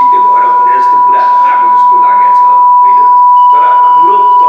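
A man speaking Nepali into a microphone, with a loud, steady, high beep-like tone at one pitch running unbroken under his voice.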